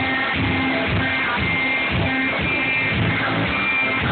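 Live blues-rock band playing: electric guitar strummed over bass guitar, with a steady low drum beat about twice a second.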